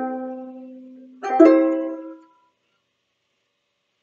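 A banjolele played as part of a riff: a chord rings and fades, then a second stroke with two quick attacks about a second in rings out and dies away by about halfway through.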